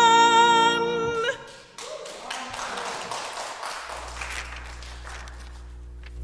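A woman's solo voice holds the final note of a gospel song with vibrato, cutting off about a second in. A few people clap briefly, and a steady low hum comes in near the end.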